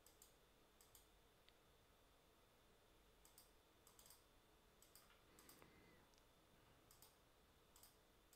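Near silence: room tone with faint, scattered computer mouse clicks, several coming in quick pairs.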